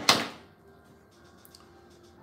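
A single sharp knock as a pen is set down on a wooden desk, then quiet with a faint steady hum.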